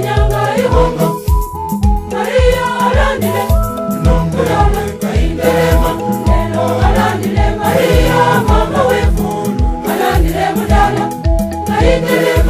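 Church choir song: choir voices over instrumental backing, with a steady low beat about twice a second.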